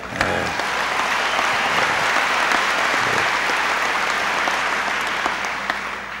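Large audience applauding, breaking out just after the start and easing off slightly near the end.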